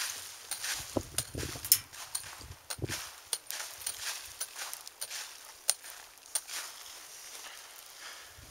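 A small hand pick striking a packed dirt bank again and again, knocking loose earth down; the strikes come irregularly, with a few heavier thuds in the first three seconds, and thin out over the last two seconds.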